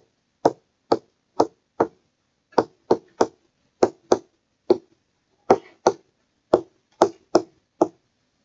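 Stylus tapping on a tablet screen during handwriting: a string of short, sharp, irregular taps, about two a second.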